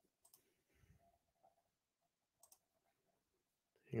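Near silence with a few faint, short clicks scattered through it, typical of a computer mouse being clicked while searching for a video.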